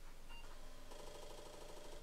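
Apple IIe restarting: a brief short beep about half a second in, then from about a second in a faint rhythmic buzz from the Disk II floppy drive starting up to boot.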